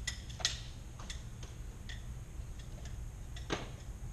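A handful of sharp, irregular clicks and clacks from a martial arts weapon being handled and spun during a form, the loudest near the end, over a steady low hum of running fans.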